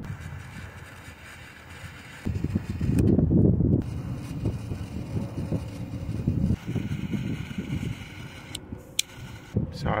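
Small butane torch lighter burning with a rough, rushing noise for about four seconds as it heats blue heat-shrink butt connectors on a headlight wire splice, followed by a couple of sharp clicks near the end.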